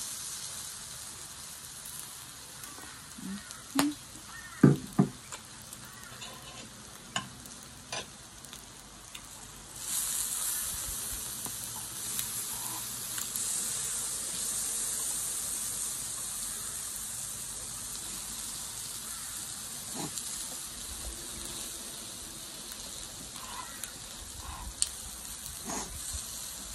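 Pork belly slices sizzling on the hot domed grill of a moo kratha pan: a steady hiss that grows louder about ten seconds in and stays up. A few sharp clicks and knocks come between about three and eight seconds, the loudest around four to five seconds.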